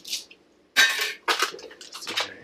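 Dishes and utensils clattering as they are handled: a short clatter at the start, then two louder knocks close together about a second in.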